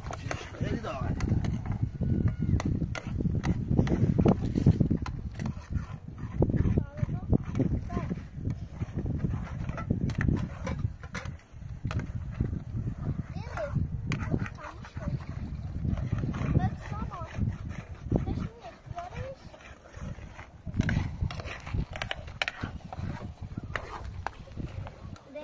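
People talking indistinctly over a low, uneven rumbling noise.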